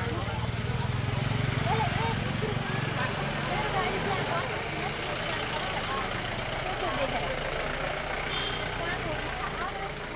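Many people talking at once over a vehicle engine idling close by. The engine hum is strongest in the first few seconds, then weaker.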